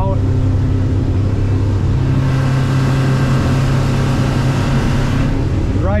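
Twin outboard motors on an offshore bracket running steadily at speed, heard from inside the boat's cabin along with the rush of water and spray against the hull, which grows louder about two seconds in.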